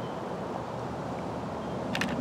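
Steady low outdoor rumble and hiss, with a few faint clicks near the end.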